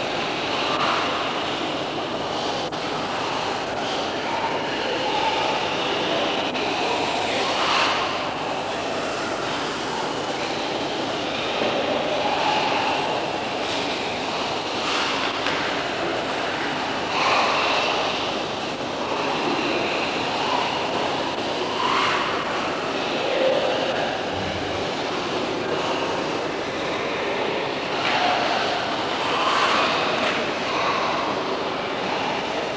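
Steady hiss and rumble of a reverberant sports hall on old camcorder audio, with a brief louder sound every few seconds.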